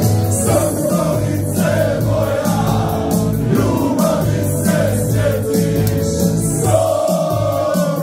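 Live Herzegovinian folk song played loud through a club PA: a male singer on microphone over electronic keyboard backing, with many voices of the crowd singing along.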